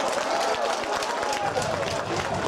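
Men's voices shouting and cheering together in celebration of a goal at an amateur football match, several voices overlapping.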